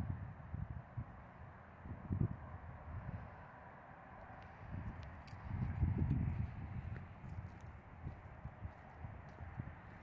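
Wind buffeting the microphone in irregular low rumbles and thumps, loudest about six seconds in, over a faint steady background hiss.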